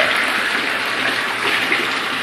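A 2014 Marquis Epic hot tub running its jets at therapy speed: a steady rush of churning, bubbling water from the HK-40 jets, with waterfall streams pouring into the tub.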